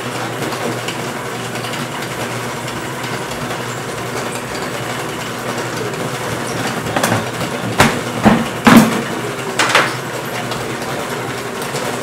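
Pizza dough sheeter's motor and rollers running with a steady mechanical drone while dough is worked into crusts. A few sharp knocks of dough and pans on the steel counter come in the second half.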